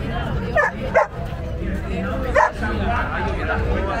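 A dog barking three times, short sharp barks about half a second in, a second in and near two and a half seconds, over speech in Spanish and crowd noise.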